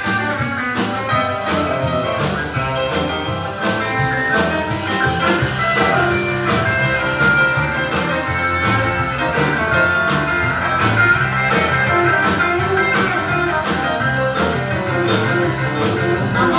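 Live band playing an instrumental break: an electric guitar solo over a steady drum-kit beat, upright bass and keyboard.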